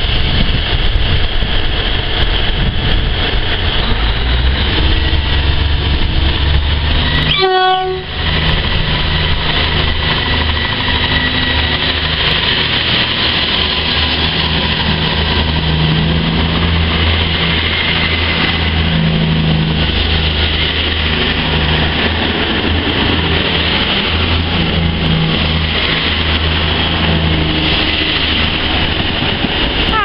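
A South West Trains Class 159 diesel multiple unit pulling away close by. Its diesel engines run under power with a steady low drone, over the rumble of the carriages rolling past.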